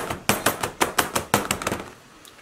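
Plastic mold filled with wet plaster mix being bumped repeatedly on a table, about four sharp knocks a second, stopping near the end. The bumping spreads the plaster evenly and works air bubbles out of it.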